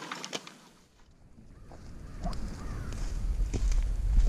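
A plastic trash bag rustling briefly as it is set down, then, after a short quiet gap, footsteps in leaf litter over a low rumble on the microphone that grows steadily louder.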